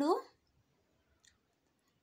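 A single spoken word at the start, then quiet room tone with one faint click a little over a second in.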